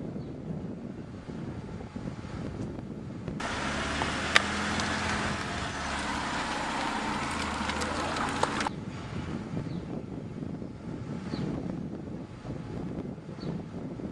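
Silver Peugeot 206 hatchback with its engine running, a low steady hum with street noise that comes in abruptly about three seconds in and stops abruptly near nine seconds. Quieter street background on either side.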